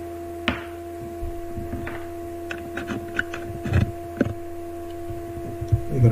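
Steady electrical hum tone with a scattered run of small clicks and knocks: headphone cables being handled and a plug going into a computer's audio jack.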